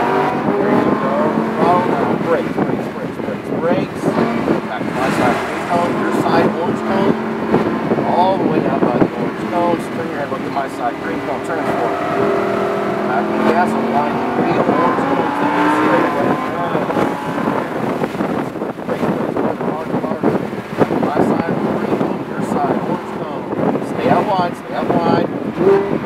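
Supercar engine heard from inside the cabin on a track lap, its pitch rising and falling repeatedly as the car accelerates out of corners and slows into them.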